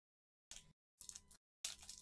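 Faint handling noise of trading cards: three short scratchy slides about half a second apart as gloved hands flip through a stack of cards.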